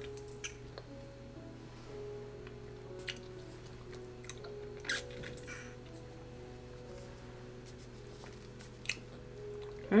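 Quiet background music with slow, held notes. Over it come a few brief, faint sounds of a thick smoothie being sipped through a straw, the clearest about five seconds in.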